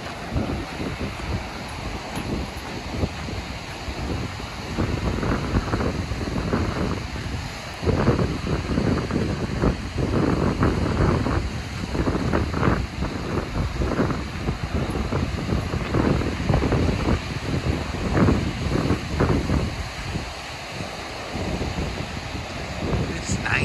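Wind buffeting the microphone over the steady wash of ocean surf on a beach, gusting harder from about eight seconds in.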